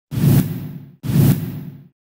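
Two identical whoosh sound effects about a second apart, each swelling quickly and fading away within a second: a news channel's logo intro sting.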